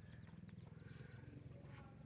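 Near silence with a faint, fluttering low rumble of wind on the microphone.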